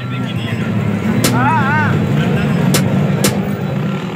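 A car engine running hard amid a street crowd's voices, with three sharp firecracker-like cracks and a brief warbling tone about a second and a half in.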